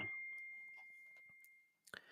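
The fading ring of a message notification chime: a single high bell-like tone dying away over about a second and a half.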